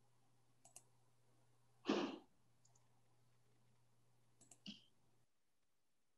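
Quiet call audio: a faint low hum, a few small clicks, and one brief louder noise about two seconds in. The hum cuts off near the end.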